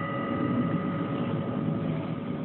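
Homemade electric bell running: its electromagnet-driven striker chatters rapidly and steadily. The ring of the steel bowl used as its gong dies away right at the start.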